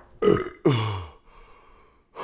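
A man burping after gulping down a glass of orange juice: a short burp, then a longer one that drops in pitch and trails off.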